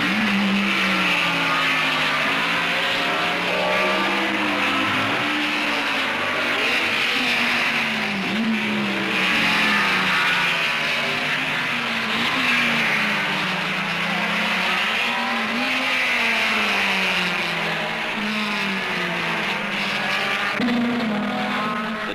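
Racing car engines running hard as several cars accelerate and pass, the pitch rising and falling over and over.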